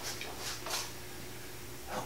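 A few faint rustles and light clicks as things are handled and a thermometer is picked up, over a steady low electrical hum. A louder short scrape or rustle comes at the very end.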